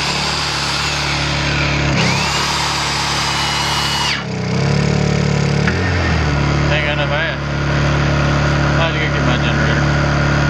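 Electric drill boring through a deck board into the trailer's steel beam for about four seconds, then stopping abruptly, with a Honda EU2000i portable inverter generator running steadily throughout. The drill is short of power and the bit is struggling to cut, which the owner puts down to very hard steel.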